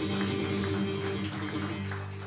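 Acoustic guitar strummed in a steady rhythm, its chords ringing, with a change of chord near the end.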